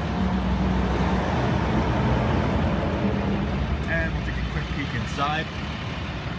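Steady low rumble of a 6.7-litre Cummins turbo-diesel idling.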